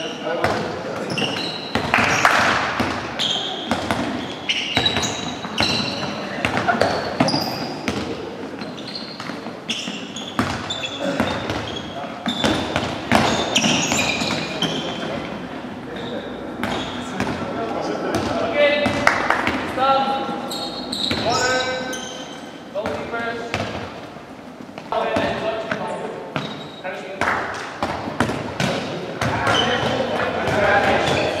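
Handballs bouncing and being thrown and caught on a sports-hall floor, many irregular thuds throughout, mixed with indistinct voices of players calling out.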